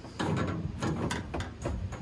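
A series of short scrapes and rubs as nylon cord is hauled tight through a trucker's hitch around a metal pipe.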